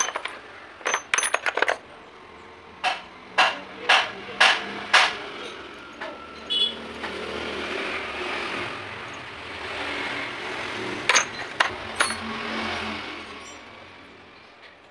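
Steel drill bits and taps clinking against each other as they are handled and sorted in a plastic tool case. The sound is a string of sharp metallic clinks: a quick cluster at the start, five evenly spaced clinks around three to five seconds in, and a few more near the end.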